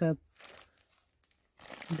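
Crinkling and rustling of a disposable adult diaper, a Friends Easy medium, being handled: a brief soft rustle just after the start, then a louder rustle building near the end.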